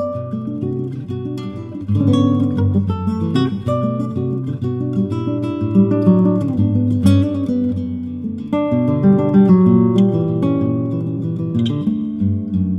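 Solo acoustic guitar played fingerstyle, a continuous run of plucked notes and chords that gets louder about two seconds in.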